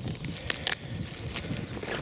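Footsteps through dry grass, with a couple of sharp clicks a little after half a second in.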